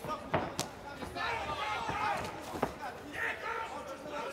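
A few sharp slaps of kickboxing strikes landing on gloves and body: two close together about half a second in, and another just before three seconds.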